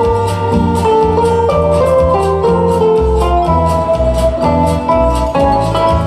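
Instrumental break in a song: steel-string acoustic guitar strummed in a steady rhythm, with a held melody line above and changing bass notes below.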